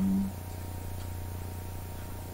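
A steady low background hum with a faint thin tone above it. A short hummed vocal 'mm' is heard right at the start.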